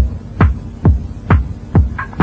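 House music from a DJ set in a stripped-down passage: a steady four-on-the-floor kick drum, a little over two beats a second, with hardly anything else over it.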